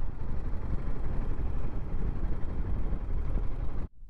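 Riding noise from a Royal Enfield Himalayan 450 single-cylinder motorcycle under way: steady low rumble of wind on the microphone, engine and tyres. It cuts off suddenly just before the end.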